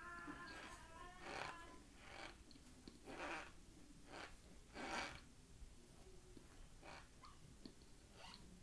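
Faint chewing of frozen cornstarch: about five short, irregularly spaced crunches, with a brief hummed "mm" at the very start.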